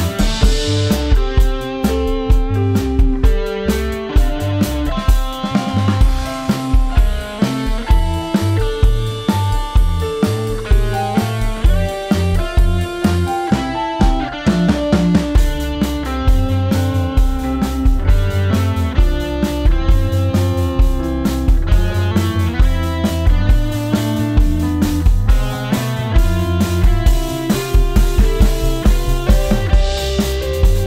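Rock band playing an upbeat instrumental: a drum kit with steady kick and snare, electric guitar and keyboard playing a piano line.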